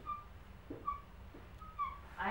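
Dry-erase marker squeaking on a whiteboard while writing: three short, faint high squeaks about a second apart, with a light tap or two of the marker between them.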